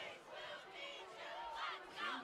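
Faint crowd voices from the stands, with distant shouting blending together.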